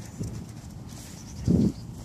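Footsteps on a concrete sidewalk while a phone is carried, with a heavier dull thump about one and a half seconds in.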